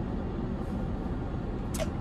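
Steady low rumble of a car's cabin, with no distinct events, and a short breath near the end.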